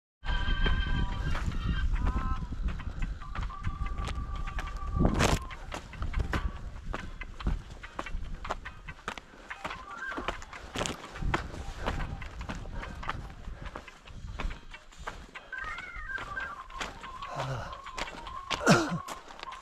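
Hiking footsteps on loose rock and scree, a steady run of crunches and scuffs, with wind on the microphone in the first few seconds. Thin steady high tones sound briefly near the start and again near the end.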